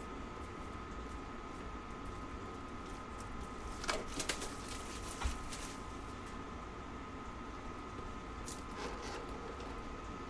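Faint rustling and a few light clicks of trading cards and card packs being handled, over a steady background hum with a faint constant whine.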